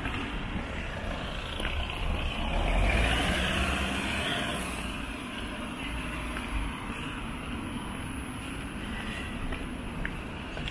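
Road traffic on a city street: a vehicle passes close by about three seconds in, its tyre and engine noise swelling and then fading. Underneath is a steady low rumble of traffic.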